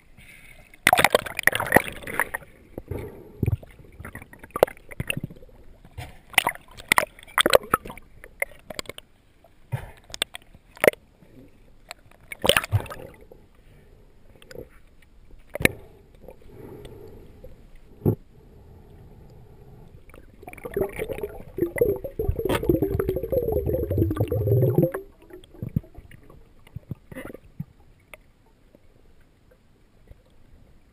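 Underwater sound picked up by a diver's camera beneath the surface: water noise with scattered sharp clicks and knocks, then a louder stretch of gurgling bubbles for about four seconds, two-thirds of the way through.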